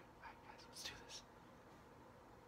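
A man whispering a few words, very faint, with a couple of sharp hissed 's' sounds a little under a second in; low room tone after.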